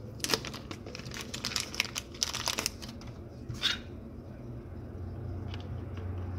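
Small clear plastic bag around a phone battery crinkling and crackling as it is handled and opened, a run of sharp crackles over the first four seconds, then quieter.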